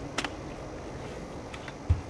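A sharp click and, near the end, a short low thud from the plastic case of a partly dismantled laptop being handled before it is pried apart.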